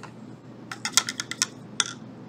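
A quick run of about eight small, hard clicks and taps in the second half: small baked polymer clay starfish knocking together and being set down on a plastic cutting mat as they are handled.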